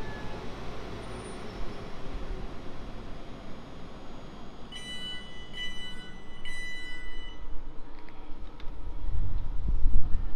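South Western Railway Class 450 Desiro electric multiple unit drawing slowly into the platform and coming to a stop, with a steady low rumble of wheels on rail. About five seconds in, a high tone sounds three times in short pulses, and the low rumble grows louder near the end.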